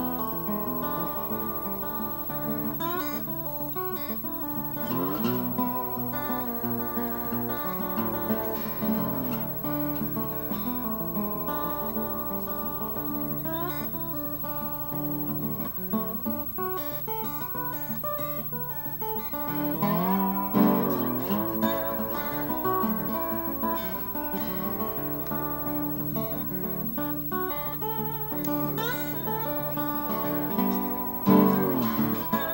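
Acoustic guitar laid flat across the lap and played slide-style, as an instrumental blues tune. Picked notes are joined by sliding glides up and down in pitch, most plainly about five seconds in and again around twenty seconds in.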